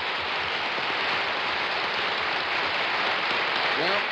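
Studio audience applauding: a dense, even clapping that holds steady throughout, with a man's voice coming in right at the end.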